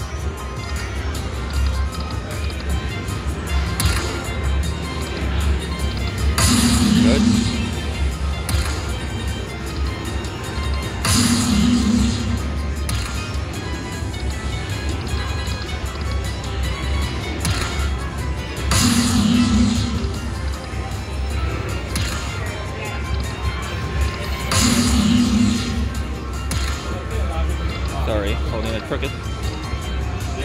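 Aristocrat slot machine playing its hold-and-spin bonus music, with a louder chime swell four times, roughly every six seconds, as the bonus reels respin and cash coins land and lock in place.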